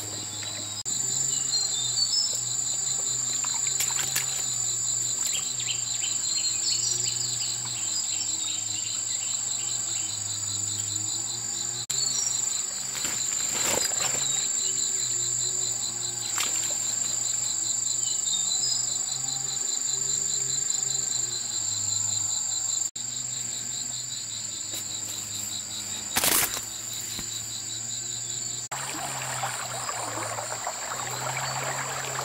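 Steady high-pitched chorus of insects, cicadas or crickets, running through, with pulsed chirping in places. A few brief sharp noises cut through it, the loudest a few seconds before the end.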